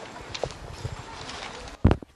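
Handheld microphone handling noise as the mic is passed from one reader to the next: a few light knocks and rubs, then one loud, short thump near the end.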